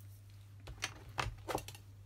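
A few light taps and soft rustles from hands handling a paper notebook and drawing tools on a desk, starting about half a second in.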